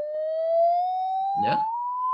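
Pure electronic beep from a tone generator, sliding smoothly and steadily higher in pitch as its frequency is turned up.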